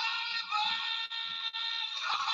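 An electronic deterrent noisemaker going off: a steady alarm made of several high electronic tones at once, starting suddenly, with two brief dips partway through.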